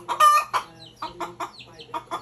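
A hen clucking: a loud squawk just after the start, then a quick run of short clucks and calls.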